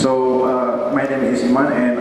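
A man speaking without pause.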